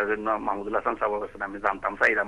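Only speech: a person talking.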